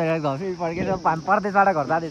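A voice talking fast in speech the recogniser did not catch, over a steady high-pitched insect drone, as of crickets.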